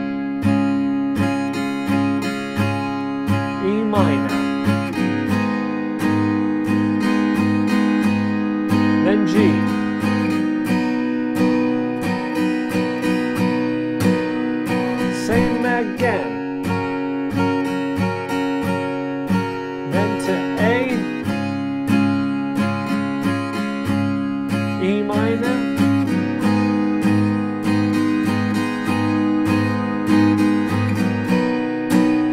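Brunswick AGF200 acoustic guitar, capoed at the fourth fret, strummed in a steady down, down, down, up, down, up pattern through the chords D, A, E minor and G, changing chord about every five seconds.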